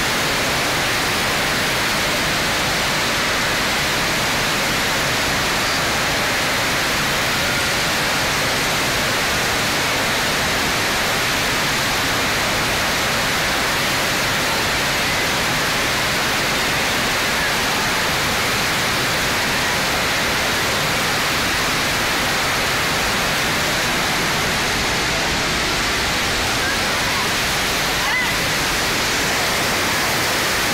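FlowRider wave simulator's pumped sheet of water rushing steadily up and over its padded surf slope, a constant loud water noise.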